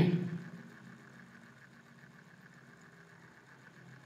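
A sudden loud sound right at the start that dies away within about half a second, then a faint steady low hum.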